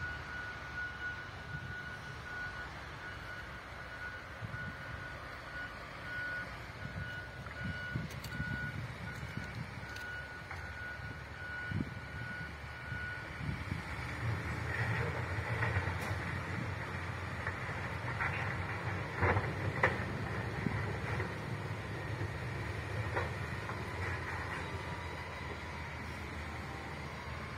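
A construction vehicle's reversing alarm beeps repeatedly, then stops about halfway through. Under it a heavy diesel engine rumbles, growing louder in the second half, with a few knocks partway through.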